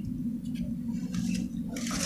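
Water sloshing with light knocks of plastic cups being handled, the noise growing louder near the end.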